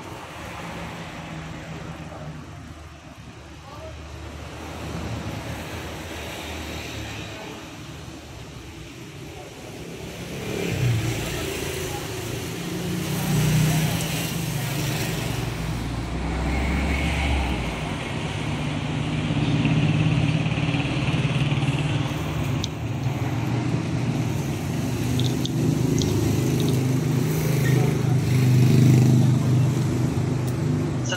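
A steady low hum and background noise, with indistinct voices under it, growing louder about ten seconds in.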